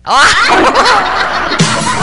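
A burst of laughter, then a music bridge with a low bass line comes in about one and a half seconds in.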